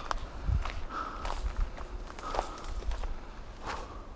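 Footsteps of someone walking through tall grass on stony ground, several uneven steps with the grass rustling.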